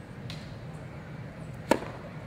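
Tennis racket striking the ball once on a forehand groundstroke, a single sharp pop near the end. A much fainter tap comes near the start, from the distant ball.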